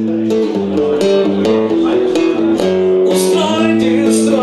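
Acoustic guitar strumming chords, the chord changing every second or so.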